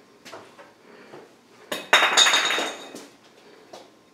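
A loud clatter with a clinking, metallic ring, starting just before two seconds in and dying away over about a second, between soft scattered knocks.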